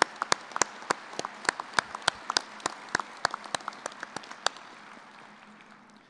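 Audience applauding, with one person's louder, sharper claps close to the microphone standing out about three times a second. The clapping dies away over the last second or so.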